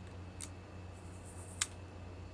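Two short metallic clicks, the second louder, from a vintage brass Registered US Mail padlock as its picked-open shackle is moved in the hand.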